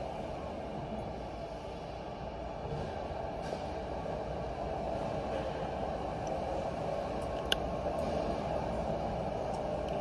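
Steady background drone of a large warehouse, even and unchanging, with a single sharp click about seven and a half seconds in.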